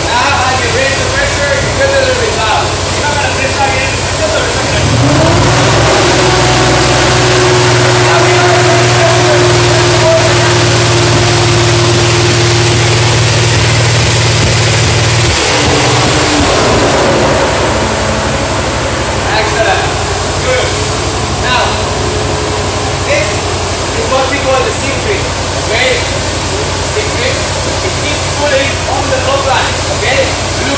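Electric blower fans inflating the fabric air race pylon run with a steady rush. About five seconds in, a second, deeper motor hum rises in pitch as it spins up, runs steadily for about ten seconds and then cuts off. Voices talk over the fan noise.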